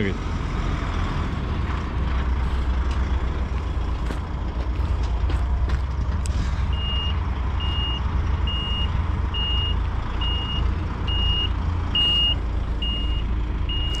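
Diesel engine of a DAF truck tractor unit running at low speed. About halfway through its reversing alarm starts: a high beep repeating steadily a little more than once a second as the truck backs up.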